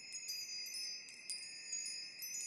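Cartoon twinkle sound effect marking the stars' sparkles: high, tinkling chime tones, many short notes starting and stopping over a steady high ringing.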